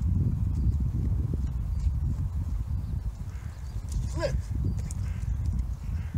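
Steady, loud low rumble of wind buffeting the microphone outdoors, with a man's short call about four seconds in.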